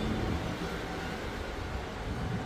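Steady low rumble and hiss of room background noise, with no distinct sound standing out.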